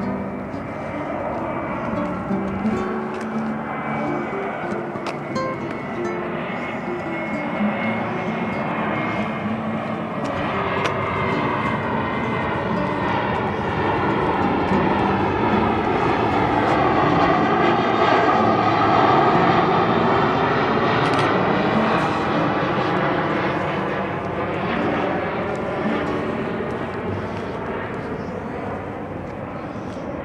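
Airplane flying over, its engine noise building slowly to a peak a little past the middle and then fading away.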